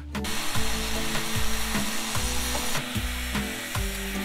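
Small electric angle grinder with a cutting disc cutting at a PVC pipe fence post: a continuous gritty hiss.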